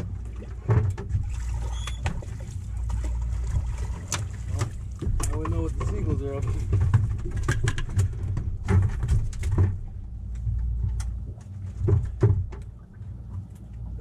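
Steady low rumble on a small fishing boat, with scattered sharp knocks and clicks of rods and gear being handled on deck and a short stretch of voices in the middle.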